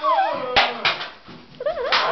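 A person's high, wavering squeals, with two sharp smacks of a broom striking a concrete floor about half a second and a second in, as a cockroach is swatted.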